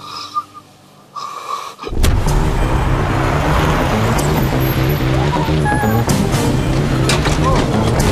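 About two seconds in, a loud car drive-in starts suddenly: a sedan's engine and tyres on a wet street, mixed with dramatic music that has a pulsing bass. A few short squeals come near the end.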